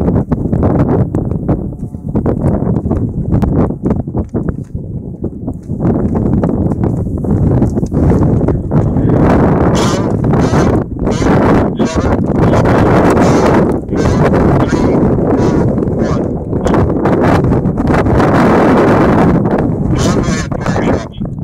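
Wind blowing across the microphone in loud, uneven gusts.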